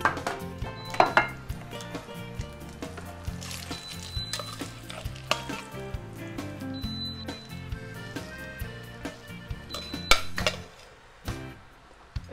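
A plate and a metal utensil clinking against a stainless steel saucepan as spaghetti is served out of it, with sharp clinks at the start, about a second in and near the end. Background music plays throughout.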